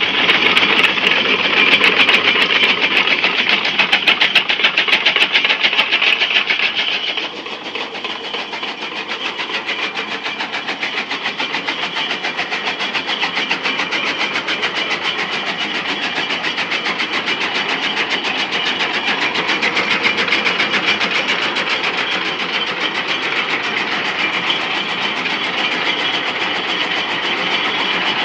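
Belt-driven chaff cutter (fodder-chopping machine) running and chopping green fodder stalks with a fast, even clatter of its blades. It is louder for about the first seven seconds, then runs on slightly quieter.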